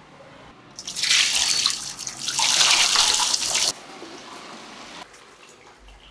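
Liquid poured into a plastic tub over metal engine casings, splashing loudly for about three seconds with a short dip in the middle, then dropping to a quiet trickle and drips.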